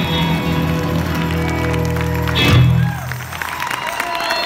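Live band of guitars ringing out the closing chord of a slow ballad, with a final accented hit about two and a half seconds in. As the chord fades, audience applause and cheering begin.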